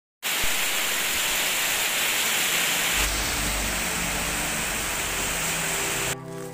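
Heavy rain pouring onto the surface of a pond, a dense steady hiss; a low rumble joins about halfway.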